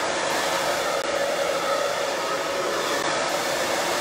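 Handheld hair dryer running steadily, a continuous rush of air with a faint hum, blowing through hair wound on a round brush.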